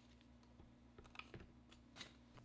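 Near silence with a few faint light clicks about a second in, from the scanner's tripod and carbon fibre handle being handled.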